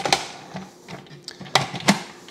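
Hard plastic parts of a food processor being fitted together: a few sharp clicks and knocks as the lid and feed-tube pusher are set into place, one at the start and two close together near the end.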